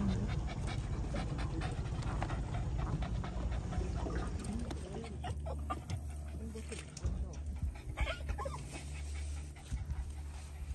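Boston terrier panting quickly for the first few seconds, over a low steady hum.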